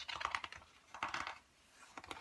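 Pages of a picture book being handled and turned: short crisp paper rustles and taps, in three short spells.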